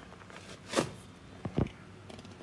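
A few short knocks: one just under a second in, then two close together about a second and a half in, over a quiet background.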